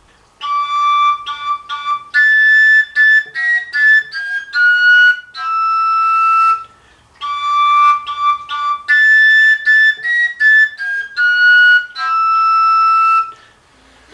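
A koncovka, the Slovak end-blown overtone flute with no finger holes, plays a short phrase of separate notes that step up and down. The same phrase is played twice, and each time it ends on a longer held note.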